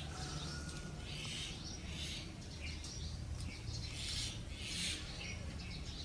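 Faint outdoor ambience: birds chirping now and then over a low steady hum.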